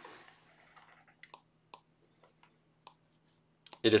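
Near silence with a faint steady low hum and a few faint, short clicks spread through it.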